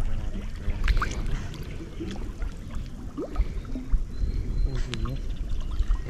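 Lake water sloshing and lapping against a camera held at the waterline, with irregular small splashes over a low rumble.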